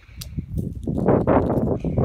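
Loud, dense crackling and rustling close to the microphone, starting about half a second in: handling noise from fingers working the broken Fitbit casing.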